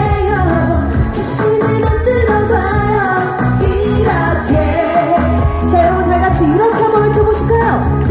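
Live Korean pop song played loud through a stage PA: a woman singing into a handheld microphone over a backing track with a steady beat, heard from the audience.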